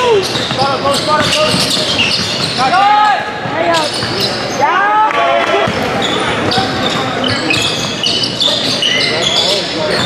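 Basketball game on a hardwood gym floor: sneakers squeaking in short rising-and-falling chirps, the loudest about three and five seconds in, a ball bouncing, and players' voices, all echoing in the large hall.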